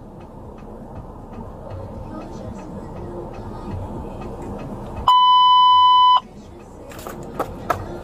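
Police radio dispatch alert tone: a single steady, high beep about a second long, starting about five seconds in, the signal before an all-units broadcast. Before it there is only a low rumble and hiss, and a few sharp clicks follow near the end.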